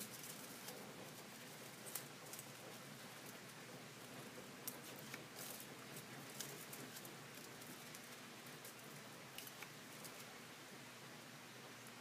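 Faint, scattered snips of scissors cutting thin paper strips, a few soft clicks at irregular intervals over a low steady hiss.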